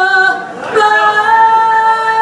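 A solo voice sings long held notes with little or no accompaniment. One note fades out about half a second in, and a new note is held from just under a second in.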